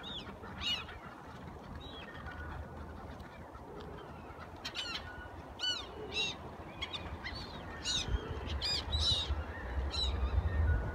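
A flock of black-tailed gulls calling: short, arched, mewing cries, several overlapping in bursts about five to six seconds in and again near the end, over a low rumble.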